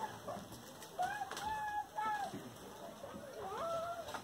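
A few faint, short pitched animal calls, spaced about a second apart, over a quiet room background.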